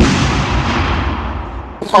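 An explosion sound effect: a sudden blast that dies away into a low rumble over about two seconds.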